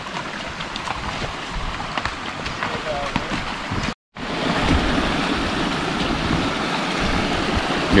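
A horse's hooves splashing and squelching through a shallow muddy creek, with running water rushing steadily around them. The sound cuts out for a moment about halfway, then comes back as a louder, even rush of running stream water.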